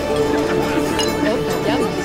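Drinking glasses clinking, with a sharp clink about a second in, over steady background music.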